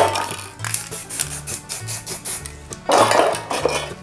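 Background music with a steady beat over metal aerosol spray-paint cans clinking as they are handled. There is a short louder burst of noise about three seconds in.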